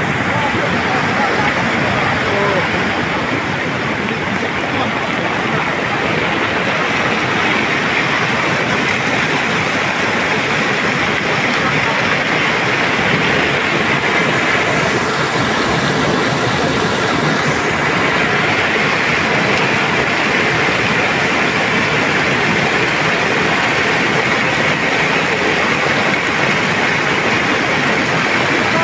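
Loud, steady rush of a muddy flood torrent of water and debris pouring down a channel after a landslide.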